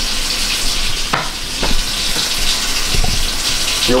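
Water running steadily, with a few light knocks.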